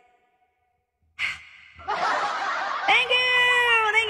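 A woman's breathy sigh and exhaling after her singing stops, following about a second of near silence. A steady held tone begins near the end.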